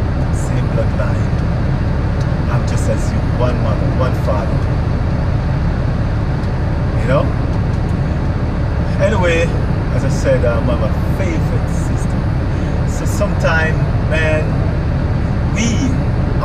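Steady low rumble of a truck's idling engine heard inside the cab, with a few short spoken phrases over it.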